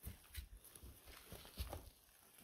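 Faint footsteps crunching on dry pine needles and gravel, a few separate steps.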